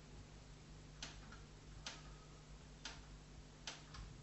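Faint sharp ticks about once a second over a low steady hum, the last tick doubled.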